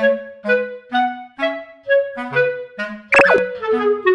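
Light, bouncy background music led by a clarinet-like woodwind playing short, detached notes. About three seconds in, a quick sliding whistle-like sound effect sweeps up and down.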